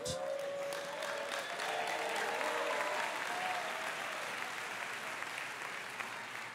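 Church congregation applauding steadily, with a few voices calling out over the clapping in the first couple of seconds.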